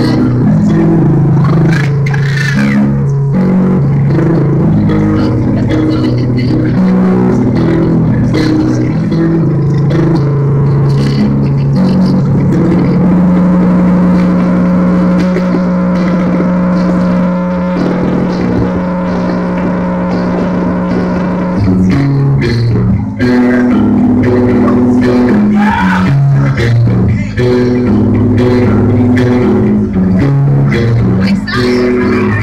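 Loud amplified heavy metal played live, recorded from the crowd: low sustained notes moving in steps, with one long held note through the middle.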